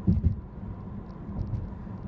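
Low, steady road and tyre rumble inside the cabin of a moving Chevy Volt, with a brief louder low bump just at the start.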